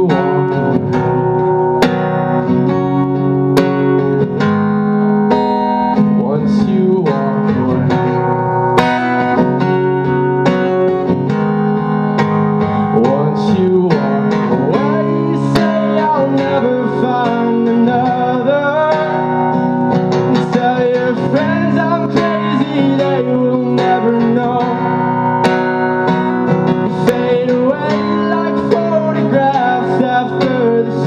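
Acoustic guitar strummed steadily through a song, with a man's voice singing a melody over it.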